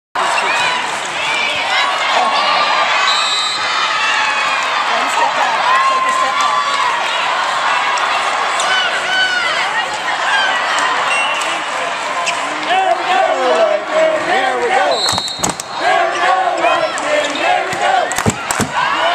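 Volleyball rally with players and spectators talking and calling out over each other, and sharp hits of the volleyball, two of them close together about three seconds before the end.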